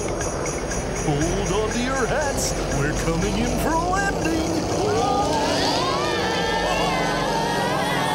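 Sleigh bells jingling in an even rhythm over a steady low rumble, with children's voices whooping and sliding up and down in pitch. The voices swell into a group cheer from about five seconds in, with music behind.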